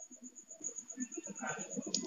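A quiet pause between spoken sentences, holding a faint low murmur of a man's voice that grows slightly toward the end, with a small click near the end.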